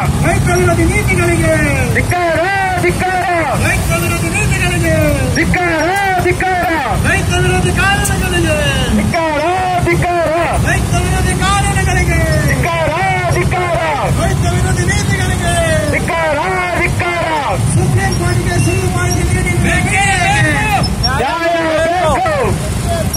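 An amplified voice carries on without a break through the loudspeaker horns. Under it runs the steady low hum of many scooter and motorcycle engines.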